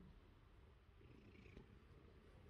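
Faint, steady purring of an orange tabby cat.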